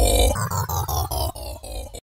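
Live cumbia music over a sonidero sound system breaks off about a third of a second in, leaving a quick repeating echo, about six repeats a second, that fades away with a falling sweep.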